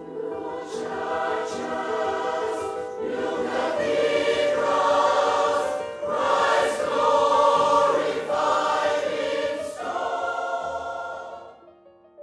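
A choir of children and women singing, with electric keyboard accompaniment; the voices swell to their loudest in the middle and die away shortly before the end, leaving the keyboard sounding alone.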